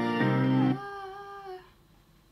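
The end of a sung ballad: the backing music and a sung note stop under a second in, and a young woman's voice holds one last soft note, bending slightly in pitch and fading out.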